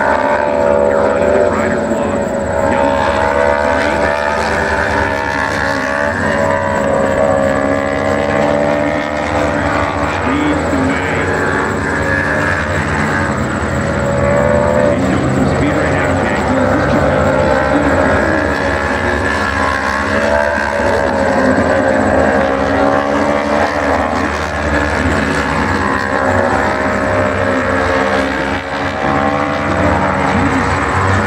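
Several racing motorcycles lapping a road course together, a continuous overlapping engine sound with each bike's pitch rising and falling as it brakes and accelerates through the bends.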